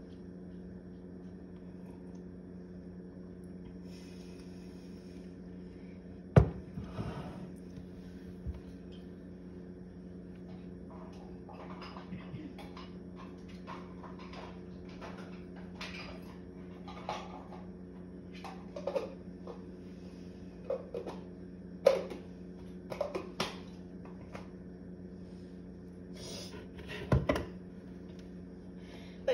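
Kitchen clatter: scattered knocks and clinks of dishes and cupboards being handled, the sharpest about six seconds in and more near the end, over a steady low hum.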